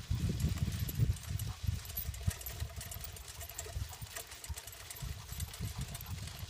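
Low, uneven rumble with light scattered ticks from a dog-drawn suspension sulky rolling along a dirt road.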